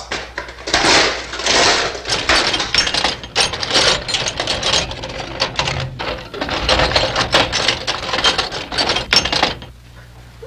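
Hand tools clattering and rattling in a metal toolbox as it is rummaged through: a dense, irregular run of clinks and knocks that stops shortly before the end.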